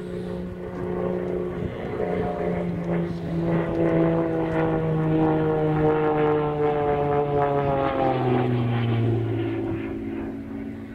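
Propeller-driven aerobatic aircraft's engine running in flight, its drone growing louder through the middle and then falling steadily in pitch near the end.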